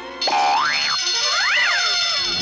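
Cartoon sound effect over music, starting suddenly about a quarter second in: two quick swooping tones, each rising and then falling in pitch, as the character is struck by the sight of the full moon.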